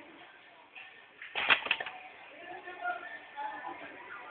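Double-sided inner-wire stripping machine cycling on HDMI cable wires: a short burst of several sharp mechanical clacks about a second and a half in, as it clamps and strips the wire ends. Faint voices in the background.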